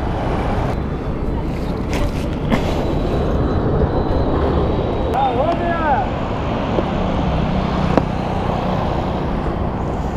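Steady roadside traffic noise and engine rumble, with a few sharp clicks as a plastic SHAD motorcycle top box is handled and its lid unlatched and opened near the end.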